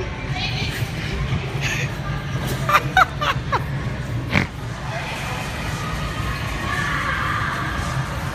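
Busy indoor trampoline park din: a crowd's background chatter and a few short shouts over music.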